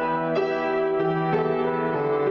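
Grand piano played solo in an improvisation: sustained chords, with new chords struck three times and ringing on into one another.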